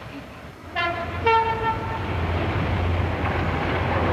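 A British Rail diesel locomotive sounds its two-tone horn about a second in, a higher note then a lower one. The train then runs past with a steady rumble that grows a little louder.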